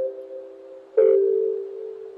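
Lofi remix music: soft piano chords, one struck about a second in with a light hit and left to ring and fade.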